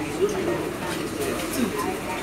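Background chatter of passengers in a train carriage standing at a station platform with its doors open.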